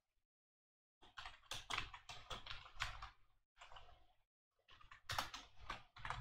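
Computer keyboard typing: quick runs of keystrokes starting about a second in, with short pauses between runs.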